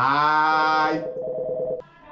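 A loud electronic stinger sound effect: a buzzy, horn-like synthetic tone that starts abruptly with a short upward swoop, drops to a lower, pulsing note about half a second in, and cuts off just before two seconds.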